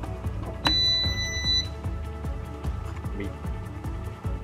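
Sunbeam bread maker giving a single high electronic beep, about a second long, less than a second after its plug goes into the outlet: the power-on beep of the machine starting up. Background music with a steady beat plays underneath.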